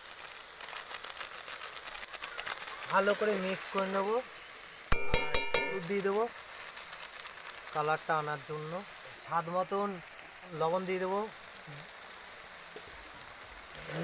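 Powdered spices and masala frying in hot oil in a kadai, a steady high sizzle as the powders are tipped in. There is a short, loud, buzzy rattle about five seconds in.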